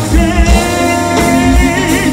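A live band playing a song, with singing over keyboards, guitars and drums and a regular kick-drum beat.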